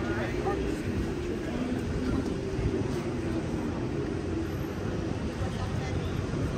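City street ambience: a steady low rumble of traffic mixed with the chatter of passers-by.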